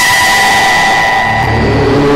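Broadcast news transition sting: two steady electronic tones held over a rush of noise, with music coming back in near the end.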